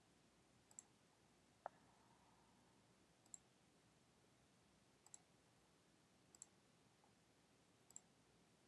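Near silence with faint computer clicks: about five quick double clicks, each a press and release, roughly every second and a half, and one duller knock about two seconds in.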